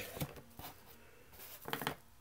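Stiff cardboard trading cards from a 1982 Fleer pack sliding against each other as one card is moved from the front of a small stack to the back. There are faint light ticks at first and a short cluster of scrapes near the end.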